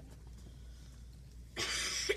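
Quiet room with a steady low hum, then a short, loud cough about one and a half seconds in.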